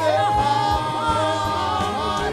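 Gospel vocal group singing in harmony: a woman's lead voice over backing singers, holding long notes that slide gently between pitches.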